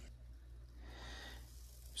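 Faint room tone: a low steady hum, with a soft breath-like hiss swelling and fading in the middle.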